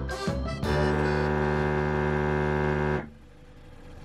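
A brief snatch of background music, then a 12-volt electric paddle-board pump running with a steady buzzing hum. About three seconds in the hum stops abruptly: the pump has shut itself off on reaching its set pressure of 12 psi.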